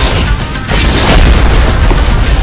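Booming impact and rushing-noise sound effects over music, swelling again with a heavier rumble about a second in.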